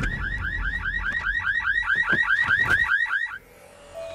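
Car alarm siren sounding in a rapid repeating warble of rising chirps, about seven a second, cutting off suddenly near the end.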